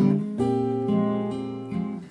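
Instrumental passage of a song between sung lines: guitar chords ringing, with a new chord struck about half a second in.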